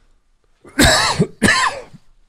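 A man coughing twice in quick succession, two short harsh coughs about half a second apart, the first starting a little under a second in.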